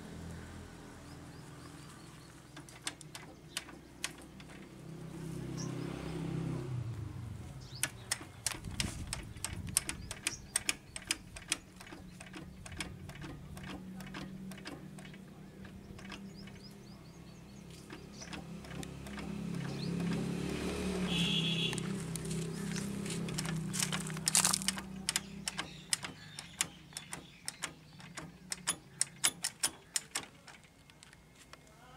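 Short metallic clicks and clinks of hands working the controls and fuel-pump fittings of an old Blackstone stationary diesel engine, coming in quick runs, over a low hum that swells and fades twice.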